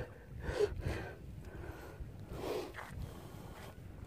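Faint breathy sounds from a person, two of them: one about half a second in and one just past the middle, over a low rumble.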